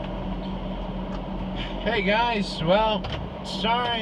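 A car's steady low hum heard from inside the cabin, with a man's voice starting about halfway through, its words unclear.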